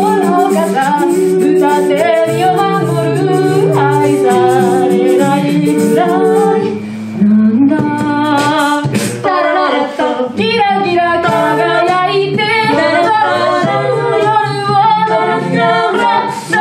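Mixed-voice a cappella group singing in close harmony, the lower voices holding sustained chords under a moving lead, with vocal percussion keeping a steady beat.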